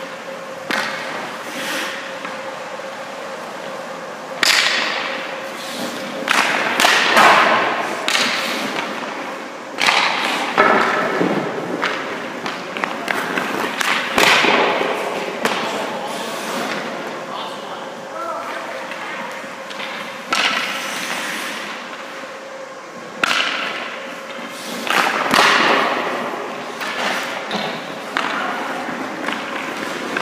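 Hockey skate blades scraping and swishing on the ice in a series of sharp bursts several seconds apart as a goalie pushes and slides around the crease, with thuds from pads or pucks. A steady hum runs underneath.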